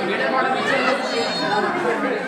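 A small group of women chattering at once, many voices overlapping.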